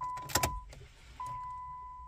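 The car's dashboard warning chime: a single mid-pitched tone struck about every 1.2 seconds, each ring fading away. There is a brief clink of ignition keys about half a second in.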